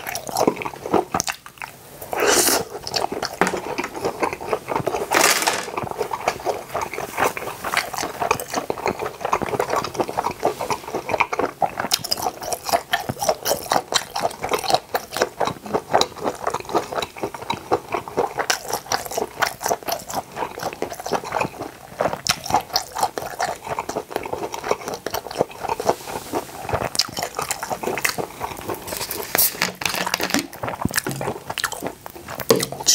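Close-miked chewing of a mouthful of grilled octopus skewer: a steady run of quick chewing clicks, with a couple of louder bites in the first few seconds.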